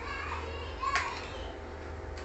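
Children's voices, with a short sharp click about a second in.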